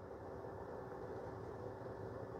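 Faint steady room tone: a low hum with a light hiss and a faint held tone.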